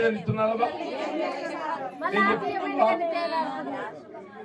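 Speech only: a man talking into a handheld microphone.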